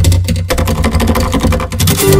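Acoustic guitar played with rapid, percussive muted strums that make a dense run of clicks, over a steady electric bass line, in an instrumental rock passage.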